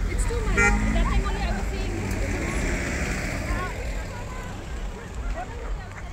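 Vehicles moving slowly past with engines running, and a short horn beep about half a second in, over people's voices.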